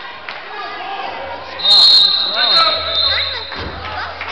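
Referee's whistle blown in one long, high blast about one and a half seconds in, calling a stop in play, with a short second toot just after. Voices of players and spectators carry on underneath in the echoing gym.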